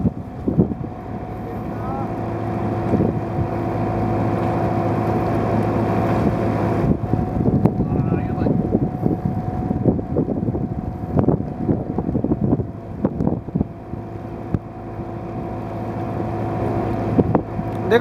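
Small boat's engine running steadily at idle, a constant low hum, with irregular clicks and knocks over it.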